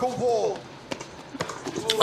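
Audio of the fight broadcast: a man's voice briefly, then three sharp knocks about half a second apart.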